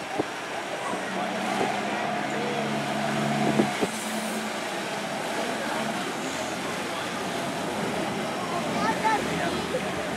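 Fireboat engines running as the boat pulls away and turns, a steady low drone over the rush of water from its wake. The drone weakens about six seconds in.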